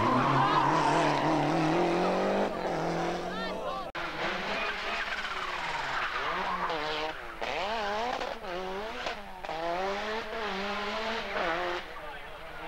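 Lancia Delta Group A rally cars' turbocharged four-cylinder engines at full throttle. First one car accelerates with the engine note climbing steadily. After a cut a second car comes through with the revs rising and falling over and over through gear changes and lifts.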